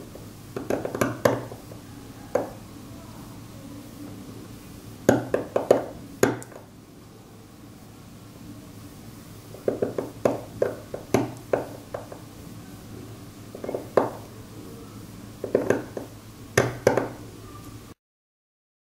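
Steel seal-carving knife cutting into the face of a stone seal: short scratchy strokes in quick clusters of several, with pauses of a few seconds between the clusters.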